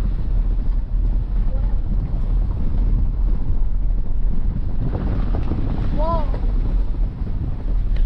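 Wind buffeting the microphone: a loud, steady low rumble and rush, with a brief voice-like sound about six seconds in.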